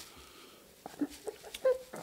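A man crying with his head down, giving a few short, choked whimpering sobs, the clearest about one and a half seconds in.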